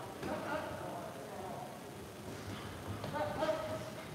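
Indistinct voices talking in the background, heard in snatches over the low hum of a large room.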